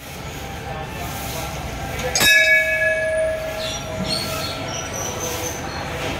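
A hanging temple bell struck once about two seconds in, ringing with several clear tones that fade over a second or two, over a steady background hum of the surroundings.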